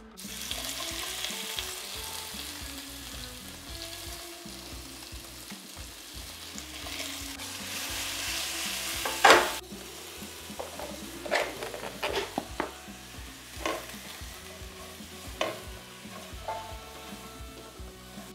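Sliced red onions and courgette sizzling in a stainless-steel sauté pan, a steady hiss. About halfway through the sizzle drops, and a few sharp clicks follow as the vegetables are stirred.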